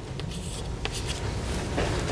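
Chalk writing on a chalkboard: scratchy strokes, with a sharp tap a little under a second in.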